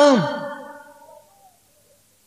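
A man's unaccompanied voice singing a Sindhi naat ends a held note with a falling glide just after the start. Its echo fades away over about a second, followed by a short silence.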